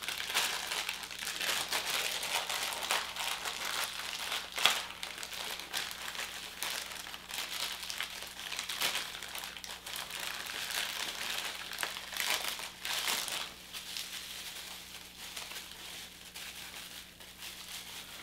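Plastic wrapping crinkling and rustling continuously as it is pulled off a small vinyl figure by hand, with a sharper crackle about five seconds in and a busier stretch of crackling around twelve to thirteen seconds.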